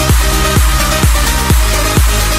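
Electronic dance music with a steady kick drum and bass, about two beats a second.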